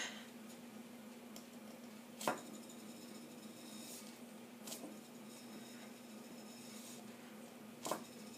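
Faint, steady hum of a wooden supported spindle spinning on its tip in an enamel-lined spindle bowl, with three soft clicks spread through it.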